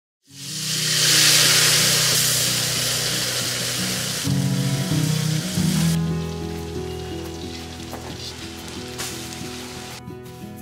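Masala-coated fish frying in oil on a flat iron pan, a loud steady sizzle that drops away after about six seconds. Background music with steady low notes plays throughout.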